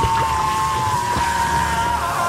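A man's long, high scream held without a break over hissing and sizzling, as molten gold poured onto his head burns him. This is film-scene audio.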